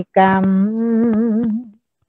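A woman's voice chanting in a long, drawn-out melodic line, holding one slightly wavering note that trails off about one and a half seconds in.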